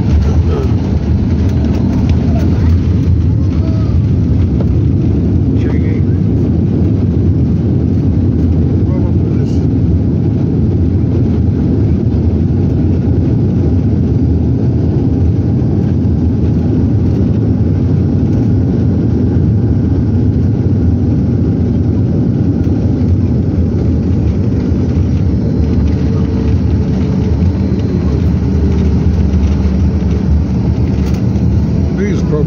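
Airliner cabin noise as the jet rolls along a wet runway after landing: a steady low rumble of engines and wheels with a steady hum.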